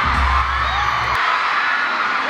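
Loud concert music with a heavy bass beat that cuts off about a second in, under a large crowd of fans screaming and cheering throughout.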